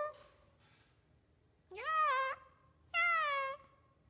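Two drawn-out meows about a second apart, each rising and then falling in pitch.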